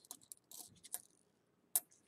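Pennies clicking and clinking against each other as they are handled and slid into a package: a few light scattered clicks, with the sharpest one near the end.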